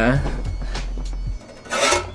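A short rubbing scrape near the end, about a third of a second long: the hinged barn-door flaps of a Neewer 660 LED video light panel being swung open.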